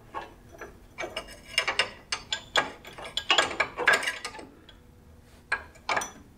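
Steel spanner wrench clicking and scraping against the adjuster ring of a Kawasaki Teryx4 front coil-over shock as it is fitted and worked, in quick clusters of metallic clicks for the first few seconds, then two sharp clicks near the end.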